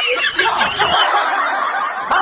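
A person laughing without a break.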